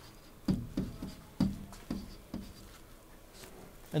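Pen tapping and scratching on an interactive whiteboard's surface while numbers are handwritten: about six short taps in the first two and a half seconds, then fainter.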